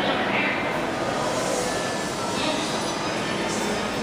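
Steady rumbling room noise of a busy indoor exhibition hall, with faint, indistinct voices.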